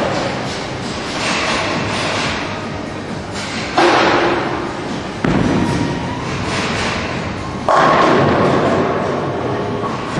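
Bowling alley: balls rolling down the lanes and crashing into the pins, with three sudden loud crashes about four, five and eight seconds in, each followed by a longer clatter.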